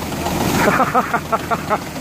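A person laughing in quick, evenly spaced bursts over the steady running of a tractor engine.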